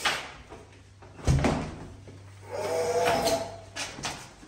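Wooden interior door being opened and handled: a sharp latch click at the start, a heavy thud about a second in, then a drawn-out squeak near the end.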